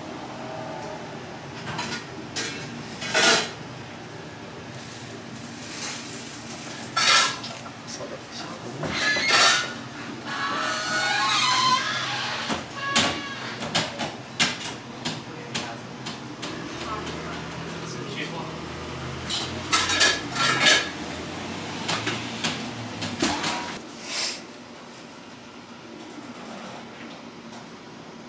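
Kitchen clatter: metal utensils, tongs and dishes clinking and knocking in scattered sharp strikes, with voices in the background.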